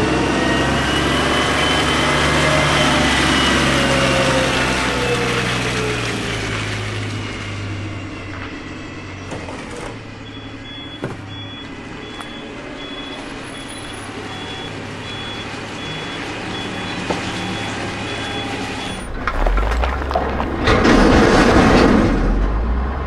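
Garbage truck running, with a whine of many tones slowly falling in pitch as a load of trash is tipped. From about halfway there are steady reversing beeps, about one a second. A loud, low rumble begins near the end.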